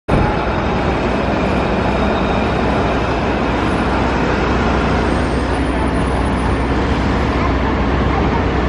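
Steady city street traffic noise: a continuous, even din of passing and idling vehicles with a low hum underneath.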